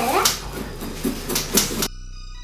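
A kitchen knife scraping and knocking inside a pumpkin that is being hollowed out: a few short, sharp scrapes. A child's voice is heard briefly at the start, and music comes in just before the end.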